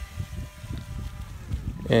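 Electric motors of a GoolRC GC001 RC speed boat whining faintly and steadily as the boat runs on the water, over low rumbling noise.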